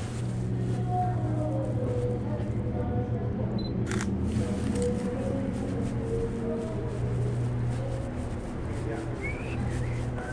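A single camera shutter click from a Sony A7R III mirrorless camera about four seconds in, over background music with a steady bass.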